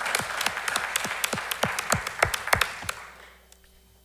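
A room full of people applauding, with several louder single hand claps close to the microphone standing out. The applause dies away about three seconds in.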